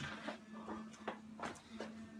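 Faint handling noise: a few soft clicks and knocks as the recording phone is moved, over a faint steady hum.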